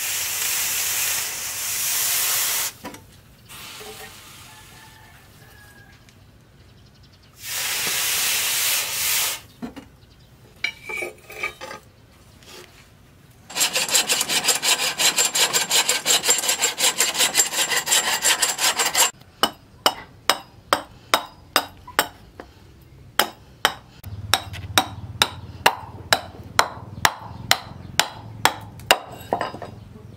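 Hot forged steel blade hissing in quench water, in two loud bursts. Then a hacksaw cutting through a wooden handle blank with quick even strokes for about five seconds, followed by a run of sharp knocks, about one and a half a second, as a blade chops and shapes the handle wood.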